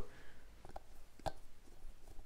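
A few faint metallic clicks of a valve core tool working the valve core out of a kart tire's valve stem.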